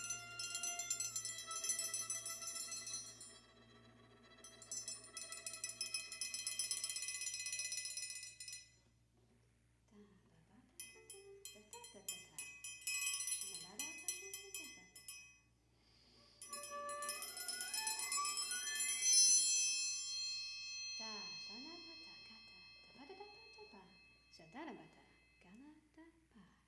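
Viola and percussion duo playing a contemporary piece: high, trembling viola tones, tapped and struck percussion, and a rising run of notes about two-thirds of the way in, with snatches of voice woven into the music.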